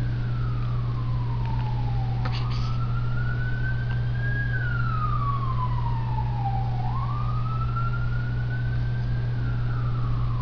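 Wailing siren, a single tone rising slowly for about two seconds and falling for about two and a half, repeating, over a steady low hum.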